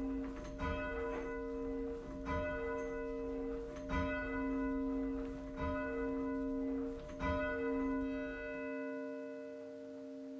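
A single church bell tolling slowly, about five strokes roughly a second and a half apart, each stroke ringing on into the next before the sound dies away near the end.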